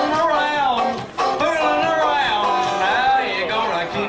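Five-string banjo picked in an old-time style with a man singing along, a lively country song.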